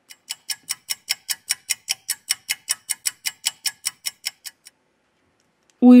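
Clock-ticking sound effect, about five sharp ticks a second, stopping about a second before the end; it marks a timed three-minute wait while the adhesive softens.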